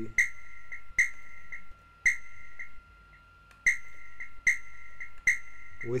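A sampled amapiano-style whistle played on its own in a pattern: short whistled notes on one steady high pitch, each with a sharp start, about one a second, with a brief pause midway.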